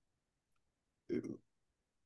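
A faint click about half a second in, then one short spoken syllable from a person's voice about a second in, with near silence around them.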